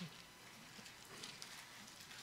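Near silence, with a few faint rustles and ticks of paper pages being handled as a Bible is leafed through.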